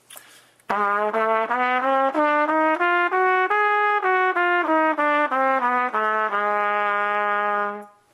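Trumpet playing a B-flat half-step/whole-step (diminished) scale over one octave. It climbs in quick separate notes, comes back down, and ends on a long held low B-flat.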